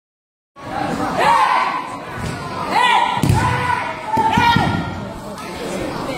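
Hapkido sparring on a mat: loud shouts ring out, and a body lands on the mat with a heavy thud about three seconds in as one practitioner is thrown down.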